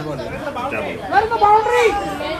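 Speech only: people talking and calling out, several voices overlapping.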